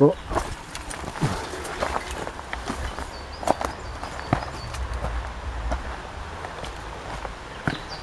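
Footsteps on a stony, rocky trail, with scattered knocks and clicks from loose stones, over a low steady rumble.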